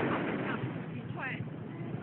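Steady wind and surf noise on the microphone, with faint voices or calls throughout and one louder rising-and-falling call just over a second in.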